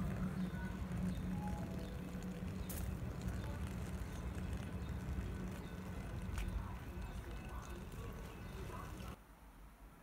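Outdoor ambience: a steady low hum with faint distant voices. It cuts to quiet room tone about nine seconds in.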